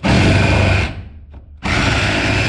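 Reciprocating saw cutting into a wooden 6x6 sill beam. It runs for about a second, stops briefly, then starts cutting again.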